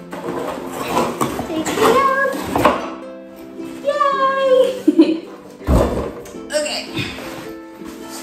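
Background music with a woman's excited vocalising over it, without clear words. There is one soft thump about two-thirds of the way through.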